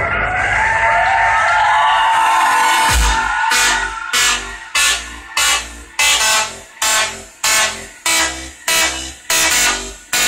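Electronic music with heavy bass playing loud through a homemade shopping-cart car-audio stereo with a Kenwood 12-inch subwoofer. A gliding synth passage gives way about three seconds in to a steady beat, about three beats every two seconds.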